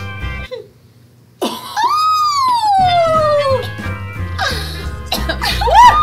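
Background music that drops out for under a second. It comes back with a long high note that rises briefly and then slides slowly down over about two seconds. A second quick up-and-down slide comes near the end.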